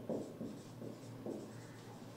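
Marker pen writing on a whiteboard: a series of faint, short strokes of the felt tip across the board.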